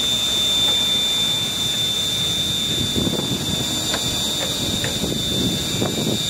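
Car wash central vacuum system running: a steady high whine with air rushing through the vacuum hose. Irregular rubbing and scraping in the second half as a dryer vent cleaning rod is drawn through the hose.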